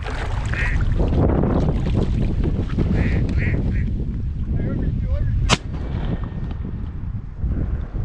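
A single shotgun shot about five and a half seconds in, fired at a flock of teal passing overhead. Wind buffets the microphone throughout.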